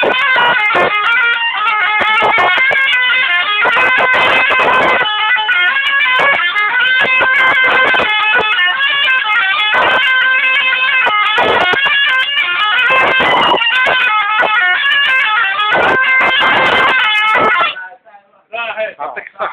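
Zorna, the double-reed folk shawm, played loud in a fast, unbroken melody of quickly changing notes. The playing stops just before the end.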